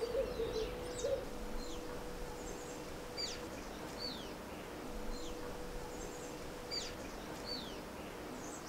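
Small birds chirping: short high notes that slide downward, repeated about once a second, over a faint steady hum that fades out near the end.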